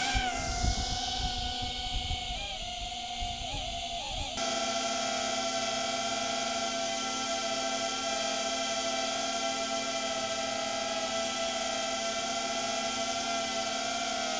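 DJI Avata 2 FPV drone's ducted propellers spinning up with a quick rising whine, then hovering with a steady high-pitched propeller whine that measures about 85 dB a foot away. The whine gets a little louder and clearer about four seconds in.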